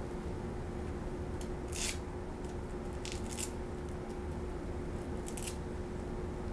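Scissors cutting a sheet of pattern material along a drawn line, in three short runs of snips about a second and a half apart.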